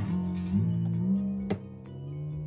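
Steel string on an acoustic guitar, the low sixth string, ringing as its tuning peg is turned by hand, its pitch stepping upward as the string is wound tight. A sharp click about one and a half seconds in.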